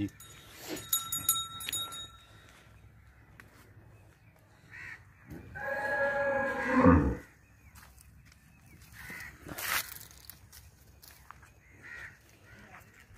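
A Friesian cross cow mooing once in the middle, a single call of about two seconds that drops in pitch at the end.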